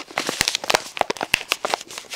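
Plastic baggies and packaging being handled, crinkling and rustling with many quick, sharp crackles.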